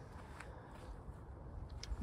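Quiet background with a faint low rumble and two faint short clicks, one about half a second in and one near the end.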